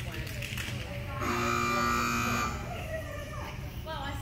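Electronic timer buzzer sounding once, a steady buzz a little over a second long, starting about a second in. In a Gamblers agility run this signals the end of the opening point-gathering period and the start of the gamble.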